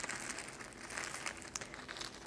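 Faint crinkling rustle of a bag being handled, with a small click about one and a half seconds in.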